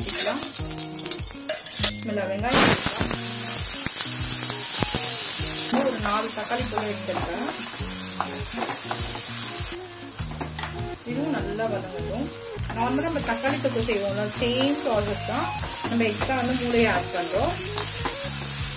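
Hot oil sizzling in a stainless steel kadai, with a loud burst of sizzle from about two and a half to six seconds in as chopped onions go in. After that, onions and tomatoes fry steadily while a spatula stirs and scrapes the pan.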